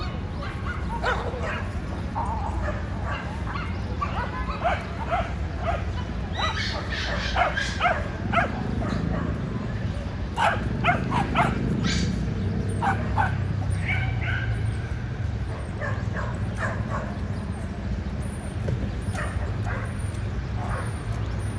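Small dogs barking and yipping in quick, overlapping bursts while they play, thickest in the first two-thirds and thinning toward the end, over a steady low rumble of city traffic.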